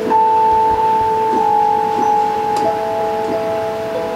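Synthesizer keyboard holding sustained chord tones: a low note and a higher note sound steadily, and a third note joins about two and a half seconds in.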